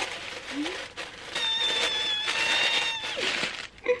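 Tissue paper rustling and crinkling as a jewellery gift box is opened, louder from about a second in. A steady high tone with overtones is held for about two seconds over the middle of the rustling.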